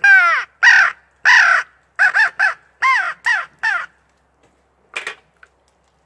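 Hand-held crow call blown by mouth, imitating crow caws: three long, drawn-out caws, then a quicker run of about seven shorter ones, stopping about four seconds in.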